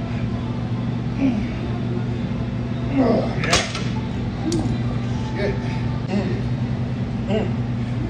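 Grunts and hard breaths from a lifter working through a set of cable curls, over a steady low hum. A loud, sharp exhale comes about three and a half seconds in, followed by a short click.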